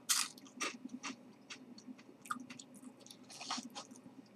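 A person biting into a Calbee Snapea Crisp, a baked green pea crisp, and chewing it: a sharp crunch on the first bite, then a run of smaller, irregular crunches as it is chewed.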